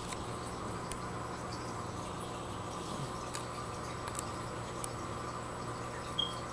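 Aquarium water circulation running: a steady hum with trickling, bubbling water and a few faint scattered clicks.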